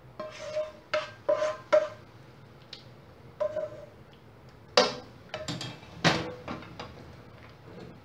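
A silicone spatula scraping and knocking against a nonstick pan and the rim of a glass bowl while thick, creamy sauce is emptied out. There is a run of knocks in the first two seconds, some with a short ringing tone, and more later, the loudest about five and six seconds in.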